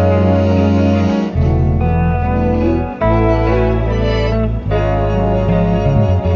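Slow, spacious trio music played by electric bass, electric guitar and alto saxophone through effects pedals. Long held bass notes change every second or two under sustained guitar and sax tones.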